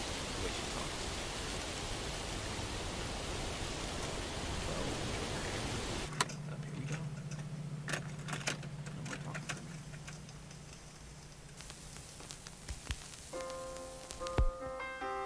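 A steady rushing hiss of outdoor noise for about six seconds. Then a low, steady car-cabin hum with a run of sharp clicks and clacks as a cassette tape is handled and pushed into a car tape deck. Solo piano begins just before the end.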